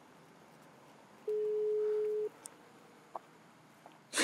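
Telephone ringback tone heard through the handset: one steady beep about a second long, starting about a second in, as the call rings unanswered.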